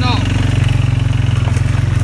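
Engine of an off-road utility vehicle running steadily at low speed: a dense, low, fast-pulsing drone.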